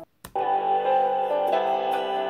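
Music with guitar playing through a laptop's built-in stereo speakers. It starts after a short silent gap about a third of a second in.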